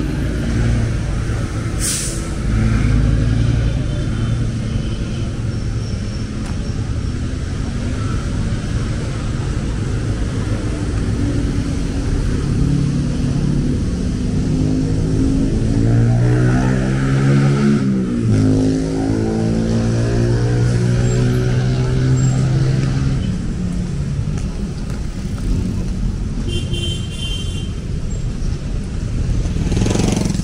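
Steady road traffic, engines running. Just past halfway one vehicle passes close, its engine note dropping as it goes by.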